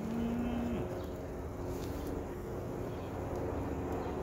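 City street traffic noise: a steady low rumble of vehicles, with a short steady tone lasting under a second at the start.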